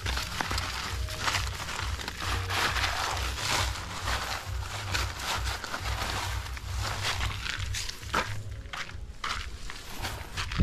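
Paper cement sacks and rubbish rustling and crinkling as they are handled and gathered up, with scuffing steps on dirt, over a low rumble.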